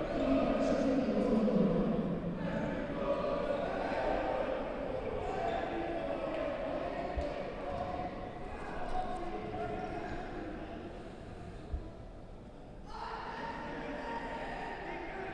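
Reverberant sports-hall ambience of players' and spectators' voices, with two dull thuds of a futsal ball on the wooden court, about seven seconds in and again near twelve seconds.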